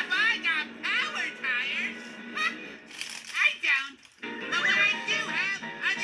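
Children's TV cartoon soundtrack played through a television speaker: high-pitched, sing-song character voices over background music, with a brief drop in sound about four seconds in.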